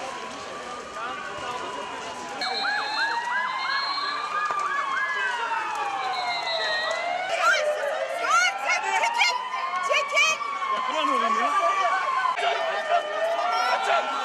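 Several emergency-vehicle sirens sounding at once, their slow rising and falling wails overlapping, with a faster warbling siren among them; they get louder a couple of seconds in.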